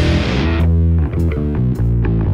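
Instrumental passage of a hard rock song: the full band with cymbals for the first half-second, then the cymbals drop out and distorted electric guitar and bass play a fast riff of short, quickly changing notes.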